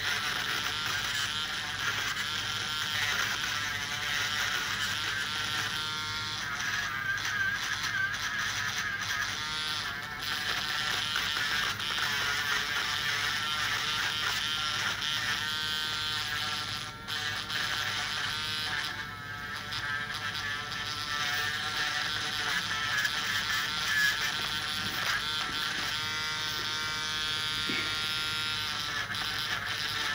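Podiatry rotary nail drill buzzing steadily as its burr grinds down thick fungal toenails, with a couple of brief dips in the sound a little past halfway.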